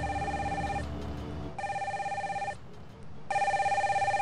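Mobile phone ringing with a fast warbling electronic trill: three rings of about a second each, with a short pause between them.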